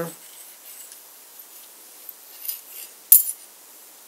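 Light metallic handling sounds from a stainless steel center square, its blade moved against the round head, with one sharp metal click about three seconds in.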